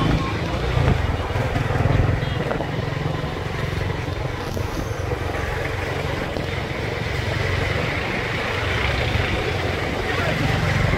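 Riding on a motorcycle taxi in traffic: wind rushing over the microphone and road noise, over the bike's low engine rumble, which is strongest in the first few seconds.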